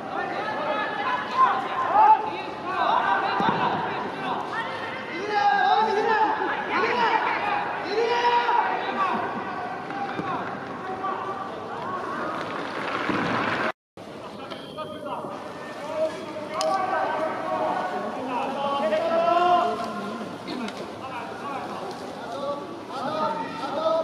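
Several voices shouting and calling out over one another across a football pitch during play, with a brief total dropout of the sound about two-thirds of the way through.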